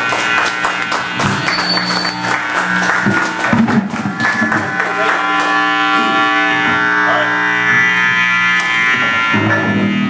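Live rock band playing on drum kit, electric guitar and bass. Busy drumming fills the first few seconds. From about four seconds in the hits thin out and held guitar notes ring on, and the drums pick up again near the end.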